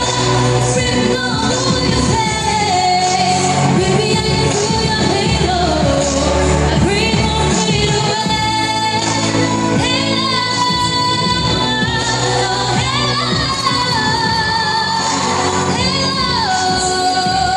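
A woman singing a pop song live into a handheld microphone, her voice amplified over backing music, with long held notes and sliding runs between phrases.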